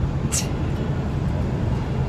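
Steady low engine and road rumble heard inside the cab of a moving truck.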